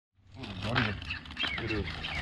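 Indistinct talking over a steady low hum, starting about half a second in.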